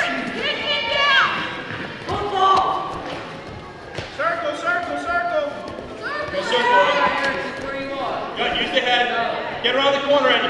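Raised voices shouting in a large, echoing gym, with one sharp thud about four seconds in.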